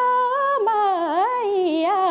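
A woman singing a Nepali folk song solo: one unbroken phrase with a wavering, ornamented melody that dips in pitch about halfway through.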